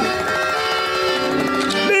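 Cartoon alarm going off as a held musical chord of several sustained notes, the lower notes shifting about three-quarters of the way through.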